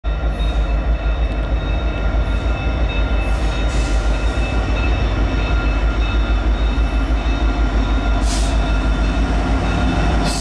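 Diesel locomotives pulling an approaching freight train: a loud, continuous low rumble that stays steady, with faint steady high tones over it.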